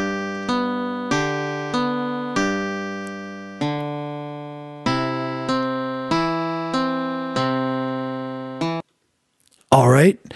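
TablEdit's synthesized guitar playback of a two-measure fingerpicking tab: single plucked notes, a thumbed bass pattern alternating with upper notes over a G chord and then a C chord, about one note every two-thirds of a second. It cuts off suddenly about a second before the end.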